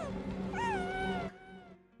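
Live-stream subscriber alert sound effect: a Baby Yoda (Grogu) coo, two short squeaky calls that rise and then fall, over a steady hiss. It cuts off abruptly a little over a second in.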